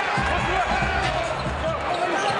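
Basketball game court sound in an arena: the ball bouncing on the hardwood floor over steady crowd noise.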